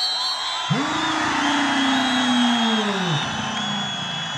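A man's single long drawn-out whoop, held for about two and a half seconds and sliding slowly down in pitch, over a crowd cheering after a successful kabaddi tackle.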